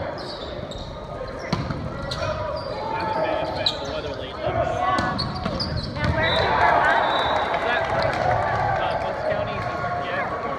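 Indoor volleyball rally in a large gymnasium: the ball being struck, with players and spectators calling out. The voices grow louder about six seconds in, as the rally ends.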